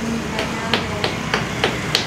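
Rapid hammering on a building site: about three sharp blows a second in an even rhythm, with voices faintly in the background.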